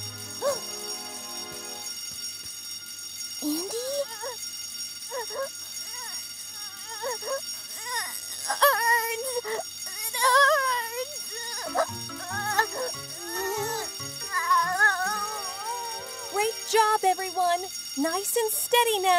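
School fire alarm ringing steadily over soft background music, with a child crying in the middle of the stretch and again toward the end.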